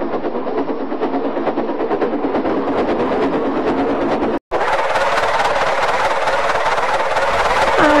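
Steam locomotive puffing sound effect: a fast, steady chuffing. It breaks off for an instant about four and a half seconds in and comes back a little louder and fuller.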